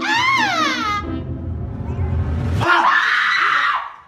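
A person screaming: a high shriek that rises and then falls in pitch over the first second, then a second, harsher scream from just under three seconds in that breaks off near the end.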